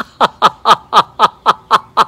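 A man laughing hard and deliberately in laughter yoga, a rapid, even run of 'ha-ha-ha' bursts at about four a second.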